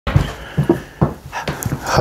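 A person settling into an office chair while wearing a clip-on microphone: a few short, irregular knocks, rustles and breaths about every half second.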